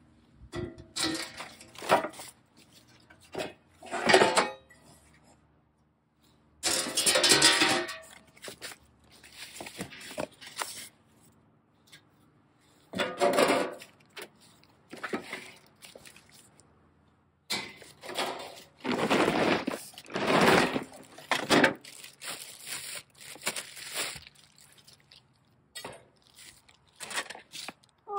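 Metal trailer panels and frame pieces, with their foam and plastic packing sheets, being handled and pulled out of a cardboard box: irregular rustles, scrapes and clanks, broken by a few short silent gaps.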